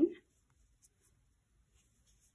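A spoken word ends right at the start, then near silence with faint scattered rustling and a couple of soft ticks just before and after a second in: t-shirt yarn being worked on a metal crochet hook.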